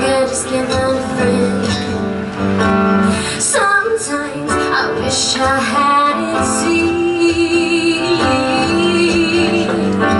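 A woman singing a song with her own acoustic guitar accompaniment, holding a long note with vibrato in the second half.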